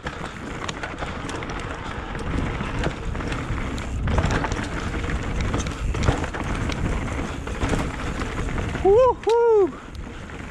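Mountain bike rolling fast down a loose rocky trail: tyre noise on gravel and dirt with frequent clicks and rattles as the wheels hit stones, mixed with wind on the helmet-mounted microphone. Near the end, two short rising-and-falling vocal cries from the rider are the loudest sounds.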